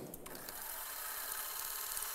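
A vintage film projector starting about a quarter-second in and then running with a steady mechanical whir.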